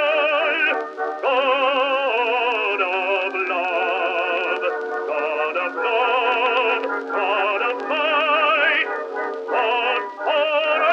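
Music from a 1917 acoustic-era recording of an operatic hymn: pitched lines with a strong, wavering vibrato, in phrases broken by short pauses. The sound is thin and narrow, with no bass.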